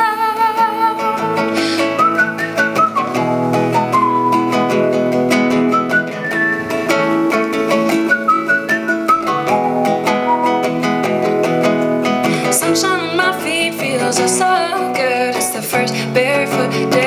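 Acoustic guitar played under a woman's voice carrying a wordless melody of long held notes. The guitar and voice continue together as live folk music.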